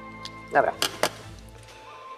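Two sharp clicks about a fifth of a second apart, around a second in, as metal hand tools and the hydraulic control valve block are handled on a steel workbench, over steady background music.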